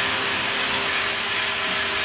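Steady machine noise with a faint hum underneath, unchanging in level, from a machine running in the background.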